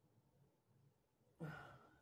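Near silence, then a person's short voice sound about one and a half seconds in that fades away.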